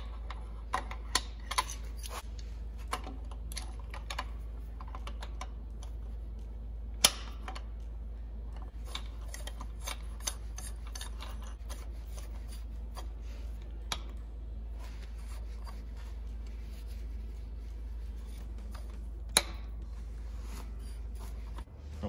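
Scattered sharp metal clicks and clinks as a steel gear puller's jaws and screw are fitted around the crankshaft gear on an engine block, over a steady low hum.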